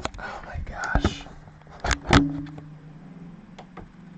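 A man's voice muttering indistinctly under his breath, then two sharp knocks close together about two seconds in.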